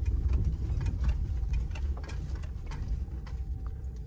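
Low, steady rumble of a car driving slowly over a rutted sandy beach, heard from inside the cabin, with scattered light clicks and ticks throughout.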